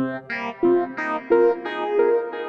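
Arturia MS-20 V software synth on its 'Car Keys' preset, run through a phaser-flanger and echo, playing a run of short, percussive notes that sustain. The notes come at changing pitches, about three a second.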